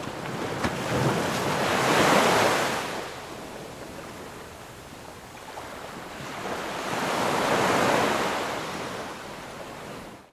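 Ocean surf washing up on a sandy beach: two waves, one swelling and fading about two seconds in, the next building near the end.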